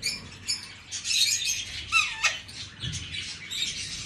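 Pet parrots chirping and chattering in short high calls, with one call falling in pitch about two seconds in.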